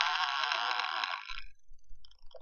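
Dense, bright electronic noise texture from the soundtrack of an experimental audiovisual video-art piece, playing over speakers, cutting off sharply about a second and a half in. A few faint clicks follow.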